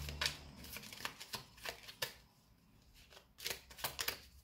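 Oracle cards being handled and shuffled: irregular soft flicks and clicks of card stock, some in quick pairs, with a quieter stretch in the middle.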